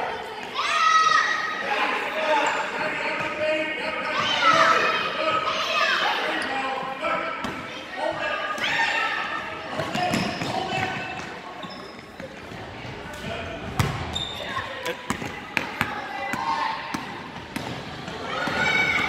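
Spectators talking and shouting in a gymnasium, with a basketball bouncing on the hardwood court. Sharp bounce knocks stand out in the second half as the ball is dribbled upcourt.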